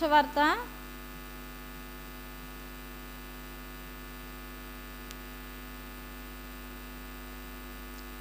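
Steady electrical mains hum, a stack of even unchanging tones, with one faint click about five seconds in.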